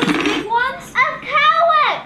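Children's voices shouting and exclaiming excitedly over one another, with a sharp noisy burst right at the start.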